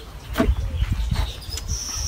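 A man gulping soft drink from a plastic bottle: a run of short, low swallowing sounds, several a second.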